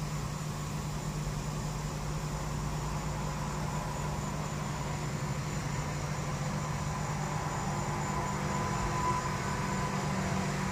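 Steady hum inside a car's cabin from the running engine and its ventilation fan, with a faint high whine over it, swelling slightly toward the end.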